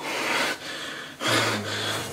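A person's breath, then a short low grunt about a second in.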